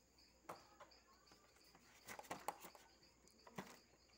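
Quiet handling sounds of plastic supplies: scattered clicks and rustles, with a small cluster about two seconds in. Behind them is a faint high-pitched chirping that repeats a few times a second.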